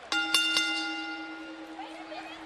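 Wrestling ring bell struck three times in quick succession, then ringing on and slowly fading: the bell that starts the match.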